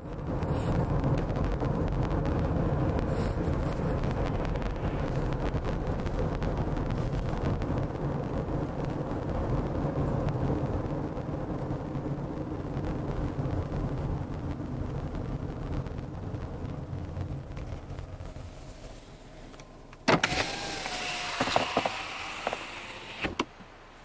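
Car cabin noise while driving: a steady low rumble of engine and tyres on the road. Near the end comes a sudden louder stretch of about three seconds with a wavering whine, which cuts off abruptly.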